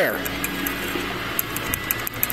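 Faint rattling of the built-in PCV valve in the breather of a 186F diesel engine: a quick run of light ticks, about eight a second, starting about one and a half seconds in.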